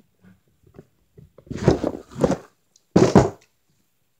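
Muffled bumping and rubbing from a phone being handled, in two bursts: one about a second and a half in and a shorter one about three seconds in.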